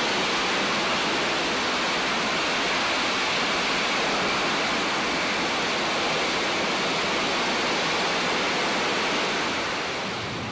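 Steady jet noise from a Boeing C-17 Globemaster III's four Pratt & Whitney F117 turbofan engines as the aircraft moves along the runway, an even hissing rush that holds level throughout.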